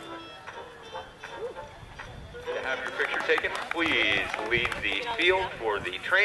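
Music on the arena public-address system, fading in the first seconds. From about halfway, an announcer's voice comes over the loudspeakers on top of it.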